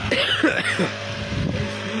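Brush cutter with a weeder head running steadily, its spinning tines churning soil and grass, with a brief louder rasp in the first second. Half of the weeder head has been taken off so that only one side cuts.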